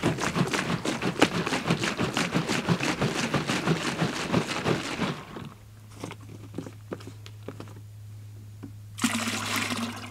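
Water and Bora-Care sloshing inside a plastic jug as it is shaken to rinse it, with quick rattling splashes for about five seconds. It then goes quieter over a steady low hum, and the rinse is poured out into a plastic bucket near the end.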